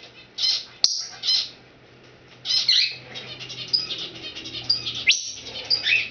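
Timneh African grey parrot chattering in a run of short, high chirps and whistles, with a single sharp click a little under a second in.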